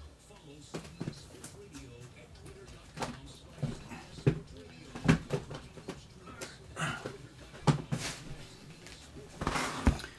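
Cardboard trading-card boxes handled off to the side: a scatter of irregular sharp clicks, taps and knocks. It ends with the boxes set down on a cloth-covered tabletop just before the end.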